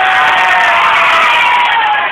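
A crowd of voices cheering and shouting together, loud and sustained, stopping abruptly shortly before the end.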